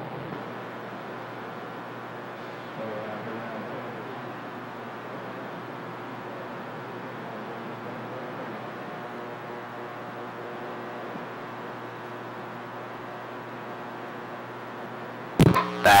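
Radio receiver hiss and static between transmissions, steady throughout, with faint distant voices just audible under the noise about three seconds in. Near the end a sharp click and burst as a station keys up, with speech starting right after.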